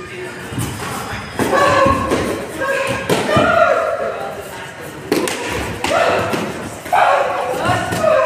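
Taekwondo sparring: several dull thuds of kicks striking padded chest protectors and feet slapping on foam mats, mixed with short shouted voices.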